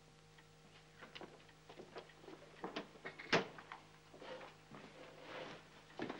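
Light footsteps crossing a floor, then a sharp click of a door's lock or latch about three seconds in, followed by softer noises of the door being opened.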